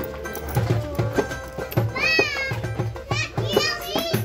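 Live pagode samba band playing: a steady hand-drum beat with cavaquinho strumming. A child's high-pitched cries come over the music twice, about two and three seconds in.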